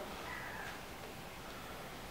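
Quiet room tone with a faint, brief bird call in the first half second.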